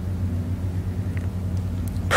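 A steady low hum with no speech, a room or sound-system hum that runs on unchanged under the talk.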